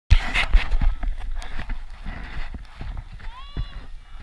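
Wind buffeting the microphone, with irregular knocks and a brief high-pitched voice near the end.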